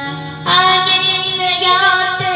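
A woman singing a trot song into a karaoke microphone over the backing track, holding long notes; a louder note begins about half a second in.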